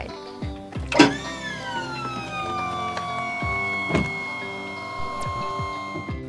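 12 V DC hydraulic power pack raising a pickup camper's pop-up roof: an electric pump motor whine that starts about a second in, drops in pitch, then holds steady. Background music with a beat plays throughout.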